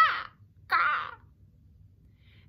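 A woman's voice imitating a crow's caw: two short, loud caws, the second about two-thirds of a second after the first.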